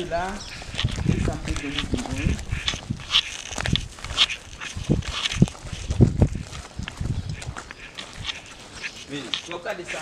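Footsteps on grass and gravel with handheld-camera bumps and handling noise, irregular thumps throughout, along with brief indistinct voices.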